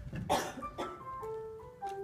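Music of slow sustained notes, with a wooden chair being dragged across the hard studio floor: two short scraping rasps, about a third of a second in and again just before a second in.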